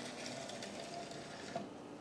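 Faint steady whir of a small motor, with a light click about one and a half seconds in.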